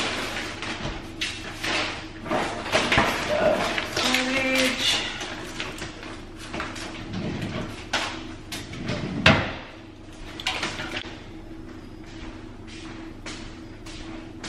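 Kitchen clatter of putting things away: knocks and clicks of silverware and cupboard doors, then rustling of a cardboard box and plastic packaging being gathered up, with a loud thud about nine seconds in.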